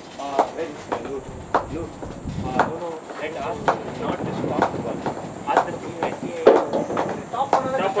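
Indistinct voices of cricket players calling across the field, with short sharp clicks about once a second.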